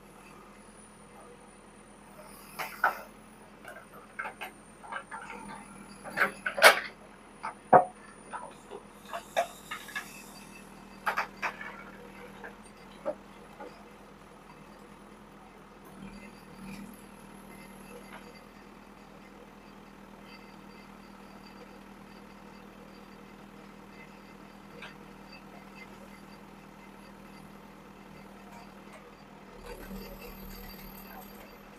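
JCB backhoe loader's diesel engine running steadily. From about two to thirteen seconds in comes a burst of sharp knocks and clatter as rock and dirt spill from the bucket into the dump truck's steel body. After that there is only the engine's even hum.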